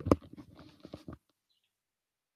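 A few short clicks and crackling noises over about the first second, then the sound cuts off to dead silence.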